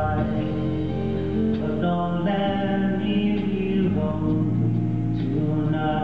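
Live slow ballad with acoustic guitar and band, with long held notes that change every second or two.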